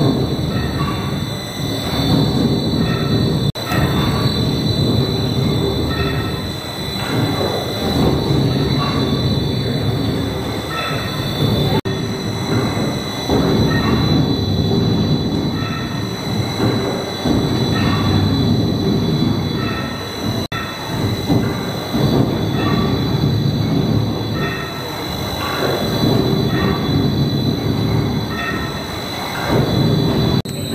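Cross-compound mill steam engine running, its large flywheel and spur gearing turning with a steady mechanical rumble that swells and fades in a regular rhythm. A faint steady high whine runs under it.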